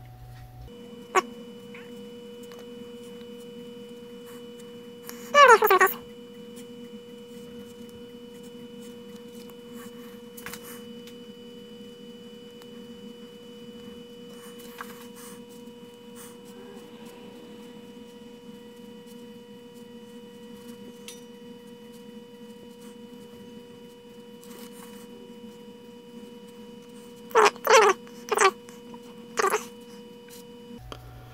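Steady low hum with faint steady tones underneath. It is broken by short, loud cries that fall steeply in pitch: one about five seconds in and a quick run of three or four near the end.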